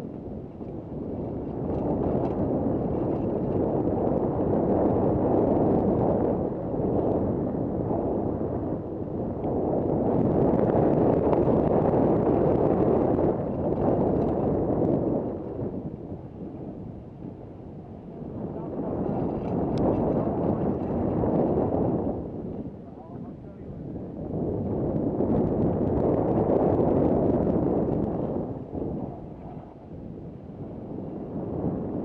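Wind rushing over a helmet-mounted camera's microphone on a mountain bike descent of a dirt trail: a low rumbling noise that swells and eases in long waves every few seconds.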